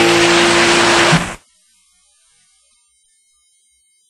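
Audience applause breaking out over the last ringing note of an acoustic guitar at the end of a live song. The tape cuts off abruptly about a second and a half in, leaving near silence.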